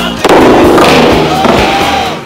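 A sudden loud, dense noisy burst, starting about a quarter second in and lasting nearly two seconds, laid over the backing music.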